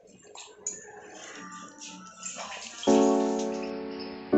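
Liquid pouring and splashing into a pan of simmering curry for the first few seconds, then a loud piano-like music chord comes in about three seconds in and fades.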